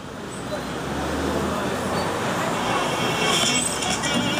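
Noisy open-air ambience: a steady low rumble with people's voices faint in the background.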